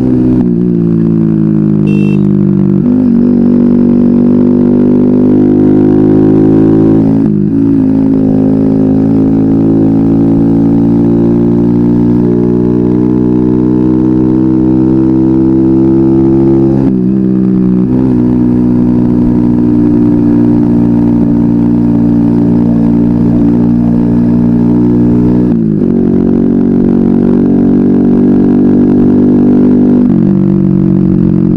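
Four-stroke-converted Mobilete moped engine running under way, heard from the rider's seat. Its pitch climbs slowly, then drops sharply, four times over.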